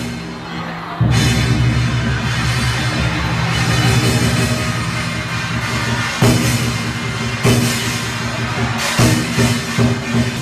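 Loud, drum-heavy music accompanying a lion dance, with continuous pounding percussion. It starts quieter and gets much louder about a second in.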